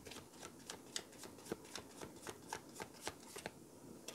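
A deck of tarot cards being shuffled by hand: a faint, quick and uneven run of soft clicks as the cards riffle and slide against each other.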